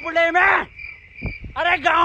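Crickets trilling steadily in the background, under a man reciting a verse line in a drawn-out sing-song voice, with a pause near the middle. A couple of low thumps sound in the pause.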